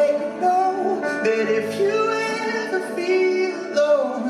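Live pop ballad: a male voice holding and bending a wordless sung note over keyboard chords.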